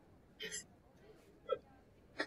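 A person's faint, stifled laughter: a few short breathy bursts with pauses between them.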